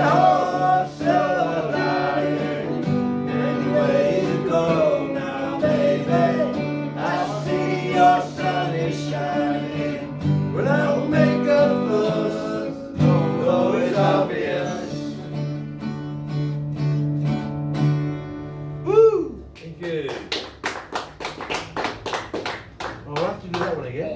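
Two acoustic guitars strummed with two men singing. The song ends on a held sung note about 19 seconds in, followed by a few seconds of clapping.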